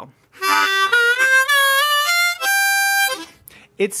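Diatonic harmonica in standard Richter tuning playing a blues scale in second position (cross harp). It climbs note by note with bent notes sliding in pitch, ends on a longer held top note, and stops a little after three seconds in.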